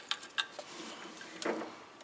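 Small sharp clicks and taps of multimeter test-probe tips being placed on the ignition coil's terminals, a few in the first half second, then a duller handling bump about a second and a half in.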